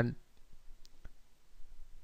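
A spoken word ends at the start, then a quiet pause with two faint, short clicks close together about a second in.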